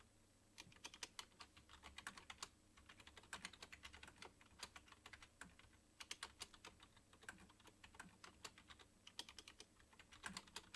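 Faint typing on a computer keyboard: quick, irregular runs of key clicks with short pauses between them.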